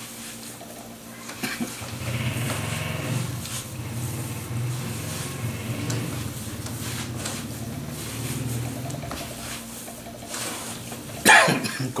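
Hands kneading and squeezing a soft, crumbly dough on a wooden table, with a low hum underneath from about two seconds in until about nine seconds in.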